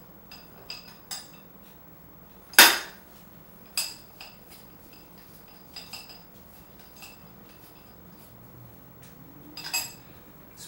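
Metal clinks and knocks as a split rim half of an electric scooter wheel is handled and worked out of the tire: about ten sharp hits, some ringing briefly, the loudest about two and a half seconds in and a short cluster near the end.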